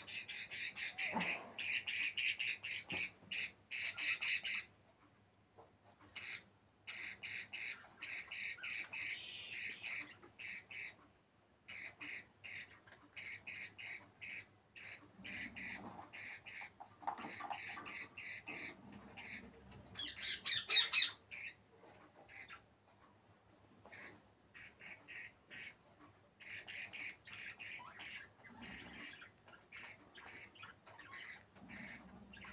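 Budgerigars chirping and squawking in rapid trains of high calls, in bursts separated by short pauses, the loudest burst about two-thirds of the way through.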